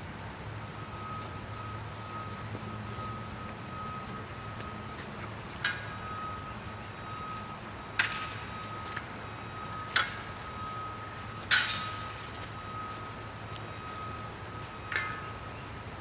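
Weapons clacking together in sparring: a long wooden staff striking a practice sword. There are five sharp hits, a couple of seconds apart, and the loudest comes about two-thirds of the way through.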